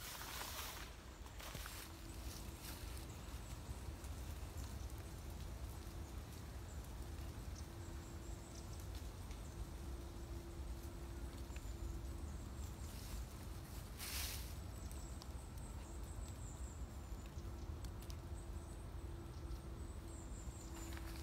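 Faint rustling and handling noises of a cord and a fabric seat being worked while a line is tied around a tree trunk, over a steady low outdoor rumble. There are a few brief rustles, the loudest about fourteen seconds in.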